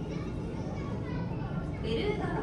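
Indistinct chatter of visitors, children's voices among them, over a steady low background noise.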